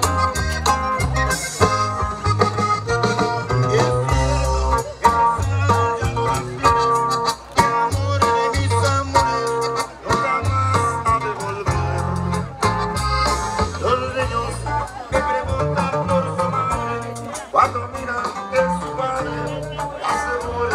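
A band playing dance music, with a steady beat of low bass notes and guitar.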